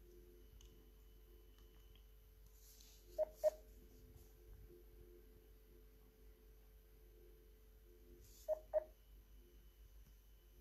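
Phone call on hold: a short double beep, two quick pips, repeating about every five seconds over a faint steady hum.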